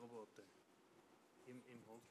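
Near silence with faint, barely picked-up speech: a few murmured words at the start and again near the end.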